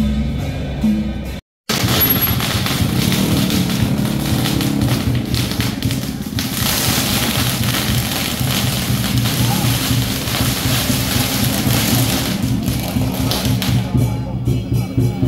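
A string of firecrackers crackling continuously, layered over procession drumming. Before that, about a second and a half in, a pulsing musical beat cuts off abruptly.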